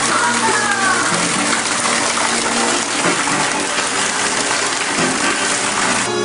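Steady rushing, water-like noise, with faint voices and music mixed in.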